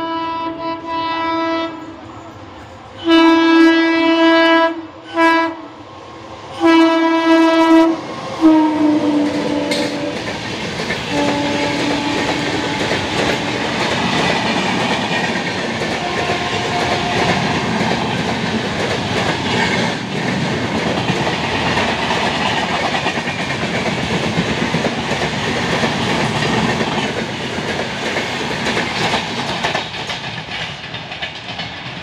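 WAP-7 electric locomotive's horn sounding in several long blasts as the train approaches at speed, the tone dropping in pitch as the locomotive passes. Then the steady rumble and clickety-clack of LHB coaches running through the station without stopping.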